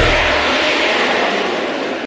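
A hard rock song ending: the drums and bass drop out about half a second in, and the cymbals and distorted guitar ring on and slowly fade.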